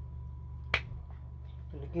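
A single sharp click about three-quarters of a second in, over a steady low hum.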